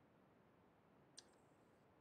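Near silence, with a single faint click a little after a second in.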